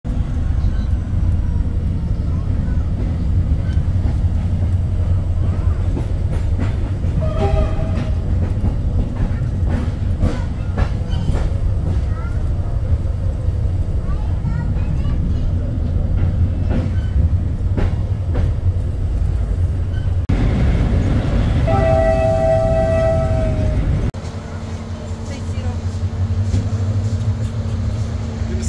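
Passenger train running, heard inside the coach as a steady low rumble with scattered clicks of the wheels over the rails. The train horn sounds briefly about eight seconds in and again for a second or so near 22 seconds. About 24 seconds in the sound drops to a quieter steady hum.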